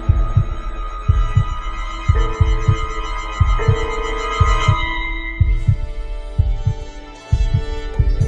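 A heartbeat sound effect, a double thump about once a second, over sustained ambient music chords. The thumps briefly fade near the end and then come back.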